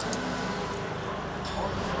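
Steady workshop background noise, with a couple of faint clicks at the start.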